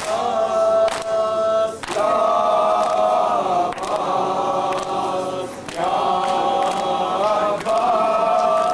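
A group of men chanting an Urdu noha in unison, in long, held, mournful phrases. Sharp slaps of hands striking chests (matam) keep the beat about once a second.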